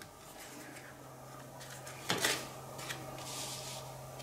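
A playing card turned over from the top of a deck and laid on a table: faint rubbing of card against card, with one light tap about two seconds in.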